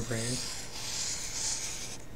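Marker pen tip dragged across paper as a long wavy line is drawn, a continuous high rubbing hiss.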